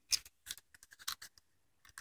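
Faint handling noise of a small plastic key-fob remote being picked up and brought close: a scattering of light clicks and scrapes, about half a dozen across two seconds.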